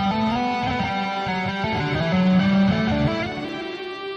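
Electric guitar playing a legato demonstration line: hammer-ons and pull-offs combined with a slide along the string, the notes stepping smoothly up and down in pitch.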